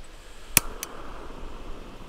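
Primus Easy Light gas lantern's piezo igniter clicking twice, the first click the louder, about half a second in. The gas catches and the burner hisses softly and steadily.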